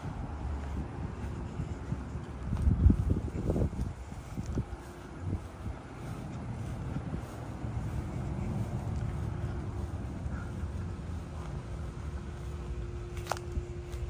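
Outdoor ambience with wind buffeting the microphone as a low rumble, swelling a few seconds in. A faint steady hum comes in about halfway through.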